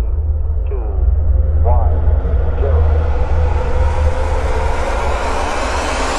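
Rocket launch rumble: a deep, steady low rumble with a rush of noise that grows louder and reaches higher as it goes. A few short voice calls cut through in the first two seconds.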